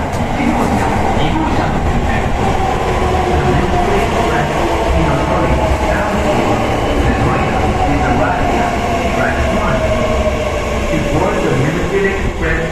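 Kintetsu 80000 series Hinotori limited express train pulling into an underground station platform and slowing: a whine falls steadily in pitch as it brakes, over the steady rumble of wheels on rail, with a few clicks of the wheels over rail joints at the start.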